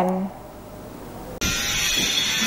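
A woman's voice trails off, then a second of faint room tone. About a second and a half in, a steady hiss with a faint buzz cuts in suddenly: the background noise of an outdoor field recording.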